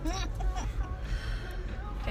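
A woman laughs briefly near the start, over the steady low rumble of a car cabin on the move.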